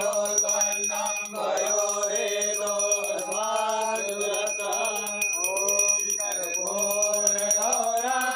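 A group of men chanting Hindu mantras together in a melodic recitation, over a steady low drone.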